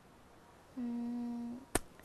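A woman's short hummed 'hmm' held on one steady pitch for just under a second, followed by a single sharp click.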